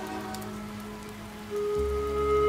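Steady rain falling, under a soft background music score of sustained notes; a new held note and a low bass note come in near the end.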